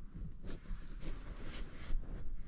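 Faint, irregular rustling and light handling noises over a low steady hum.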